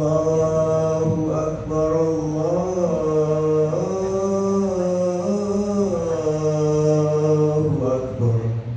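A young man's voice chanting the adhan, the Islamic call to prayer, into a microphone. He holds one long ornamented phrase for nearly the whole eight seconds, its pitch stepping up and then sinking back before it ends.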